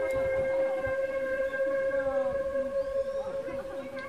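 Korean bamboo transverse flute holding one long steady note, which fades out near the end.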